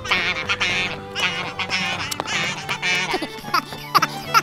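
Cartoon duck quacking sound effects, a quick series of short quacks, over light children's background music.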